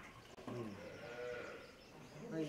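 A bleating farm animal gives one wavering bleat of about a second, starting about half a second in.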